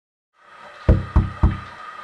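Three quick knocks on a door, about a quarter of a second apart, roughly a second in.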